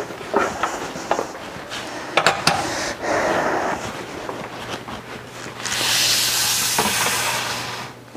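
Kitchen handling sounds: light clicks and knocks of utensils and trays being moved on a countertop, with a brief rustle a little after three seconds. About three-quarters of the way through comes a steady hiss lasting about two seconds, the loudest sound, over a faint low hum.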